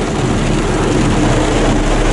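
Steady engine and road noise inside a truck's cab as it drives in heavy rain, with an even hiss of rain on the roof and glass.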